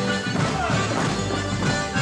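Live folk dance band playing a polka, with sharp wooden clacks of morris sticks struck together by the dancers.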